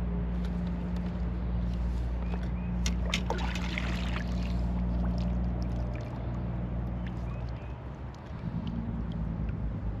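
A low, steady engine drone from distant vehicle traffic, shifting pitch a couple of times in the second half. About three to four seconds in come a short run of sharp clicks and light water noise, as a spinning reel is worked against a snagged line.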